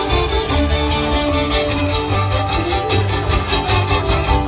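Live string-band music: fiddles carry the melody in sustained bowed lines over strummed acoustic guitar and banjo, with a steady driving rhythm.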